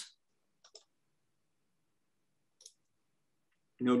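Faint computer mouse clicks in near silence: a quick pair about two-thirds of a second in and a single click later. Speech starts near the end.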